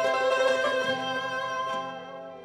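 Traditional Tajik Shashmaqom instrumental ensemble playing a mukhammas: plucked long-necked tanbur lutes together with bowed strings hold a melodic line. The phrase thins out and fades near the end.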